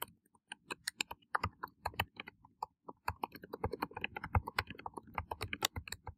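Typing on a computer keyboard: a quick, irregular run of key clicks, coming thicker in the second half.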